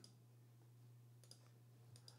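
Near silence over a low steady hum, with two faint computer clicks in the second half, made while text highlighting is taken off in a document.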